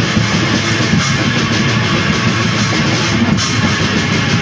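Raw black metal: distorted guitars and drums playing a dense, loud, unbroken wall of sound.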